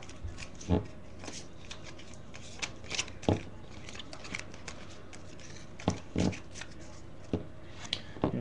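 Hands opening a trading-card pack and handling the cards: a few soft, scattered rustles and taps.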